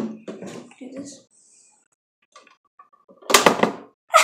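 A Pie Face toy's spring-loaded plastic hand snapping up with a sudden sharp clack near the end, slapping whipped cream into the player's face.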